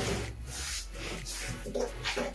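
Light handling noise: hands brushing, patting and gripping the hard plastic casing of a portable compressor fridge, feeling along its recessed side handles.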